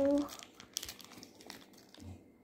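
A young child's sung note trails off just after the start, followed by faint, irregular crinkling and small clicks from candies being handled.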